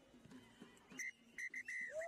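Referee's whistle: a short blast about a second in, then two more close together near the end, the last one the longest.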